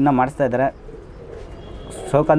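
Male Trichi pigeon cooing: a warbling, wavering coo in the first second, then a lull. It is a courtship coo, given with the tail fanned in display.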